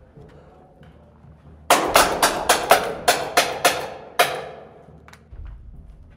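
A rapid string of about ten paintball marker shots, roughly four a second with a short pause before the last, echoing off concrete walls.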